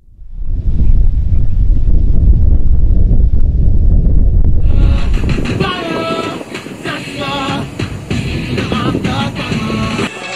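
A loud, deep rumble that swells up within half a second and holds for about five seconds, then gives way to music with a singing voice.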